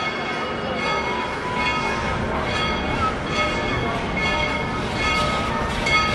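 A train bell ringing in a steady rhythm, about one ring every 0.8 seconds.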